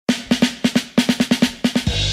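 Snare drum fill in a music track: a quick run of about fifteen sharp strikes, roughly seven a second.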